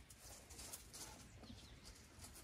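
Near silence: faint outdoor ambience with a low hum, scattered faint high ticks and a few short chirps.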